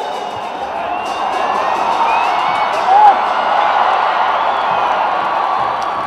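Stadium football crowd cheering and whistling, swelling as a corner kick goes into the box, with a short, loud pitched shout or horn note about halfway through.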